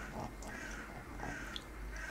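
Quiet room with faint, repeated short animal calls in the background.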